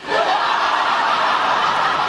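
Studio audience laughter, rising quickly at the start and holding steady.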